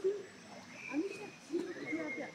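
Indistinct voices of people talking, with no words that can be made out.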